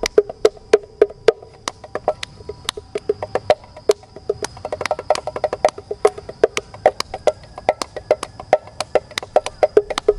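Mini bongos played by hand: a quick, steady run of sharp, ringing strikes, several a second, with no break.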